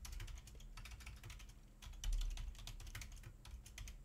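Typing on a computer keyboard: a quick, uneven run of light keystroke clicks as a command is entered.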